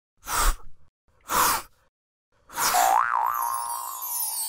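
Cartoon sound effects for an animated logo: two short swishes about a second apart, then a wavering tone that settles and holds under a falling shimmer, fading out near the end.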